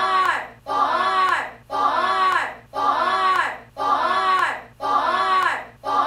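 Several voices shouting together in a short burst, repeated as an identical loop about once a second.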